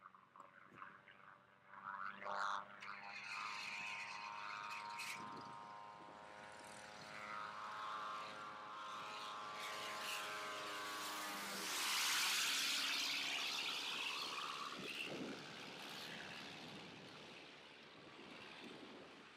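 VariEze pusher-propeller aircraft flying past overhead: the steady engine and propeller drone grows louder as it approaches, drops in pitch as it passes about twelve seconds in, loudest at that moment, then fades as it flies away.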